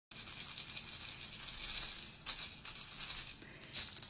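A handheld maraca shaken in quick strokes, a rattling hiss that dips briefly near the end.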